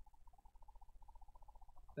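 Near silence: room tone with a faint low hum and a faint tone pulsing rapidly, about ten times a second.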